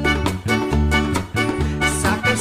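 Drum kit played along to an upbeat song, the drums keeping an even beat over a bass line and melody.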